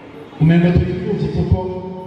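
A man's voice through a microphone, starting about half a second in, with long syllables held at a steady pitch. A few low thumps sound under it.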